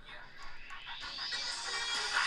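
Music playing from a smartphone's speaker, getting steadily louder as the volume is turned up with a Bluetooth media button.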